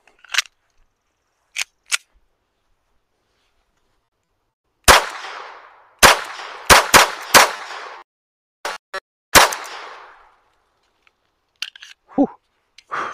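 Walther P22 .22 LR pistol fired about six times at an uneven pace, each shot sharp with a short ringing tail. A few light clicks of the pistol being handled come before the first shot.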